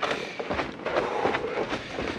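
Footsteps crunching in snow with rustling, an irregular run of short crackling crunches.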